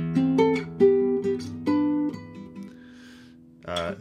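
Nylon-string flamenco guitar fingerpicked: a handful of two-note chords over a low E bass, an A minor shape over E, plucked in the first two seconds and left to ring out and fade.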